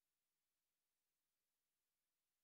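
Near silence: the sound track holds no audible sound, only a very faint even hiss.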